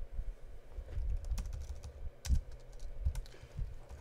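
Typing on a computer keyboard: an irregular run of key taps, a few of them louder than the rest.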